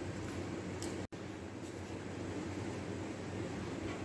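Steady room noise, a low hum with hiss, broken by a brief dropout to silence about a second in.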